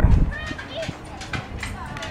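Sound of an outdoor soccer match: players' voices calling out at a distance over scattered short thumps, quieter than the close speech that ends just after the start.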